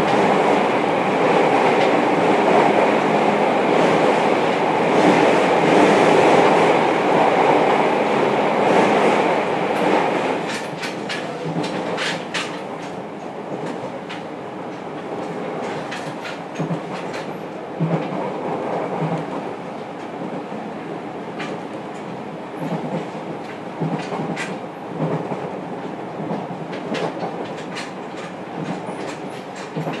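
Running sound of a JR Kyushu 303 series electric train heard inside the motor car: a steady rumble of wheels on rail, loudest for the first ten seconds, then quieter with scattered clicks of the wheels over rail joints.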